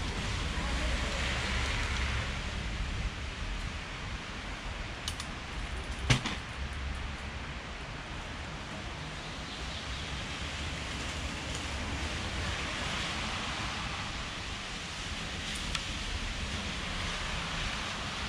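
Steady outdoor background noise, a low rumble and hiss, with a single sharp knock about six seconds in and a couple of faint clicks.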